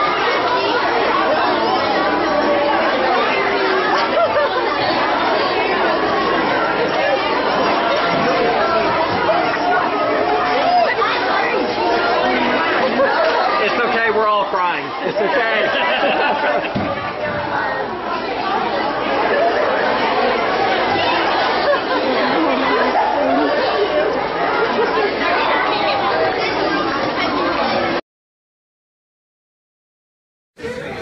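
Many people talking at once, a steady hubbub of overlapping voices with no one voice standing out. It cuts off suddenly to silence about two seconds before the end.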